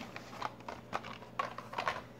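Plastic blister-pack cards of diecast toy cars being handled and set down on a table: a few light, irregular clicks and taps.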